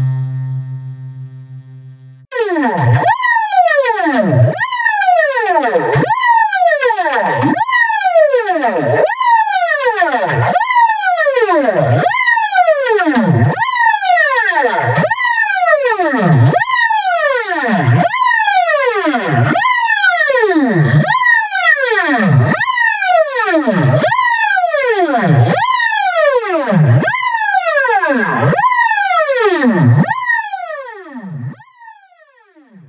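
A held electronic drone fades out over the first two seconds. Then a loud electronic tone swoops down in pitch and back up again, about once every one and a half seconds, over and over.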